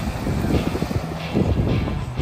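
Jeep Wrangler driving past close by, its engine and tyres making a low, uneven rumble that swells twice.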